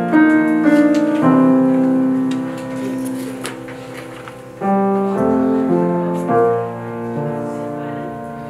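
Piano playing a slow passage of held chords, the chords changing every second or two: interlude music between scenes.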